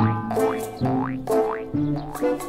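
Cartoon background music with a bouncy rhythm. A low bass note sounds about twice a second, each followed by a quick rising, sliding note like a boing.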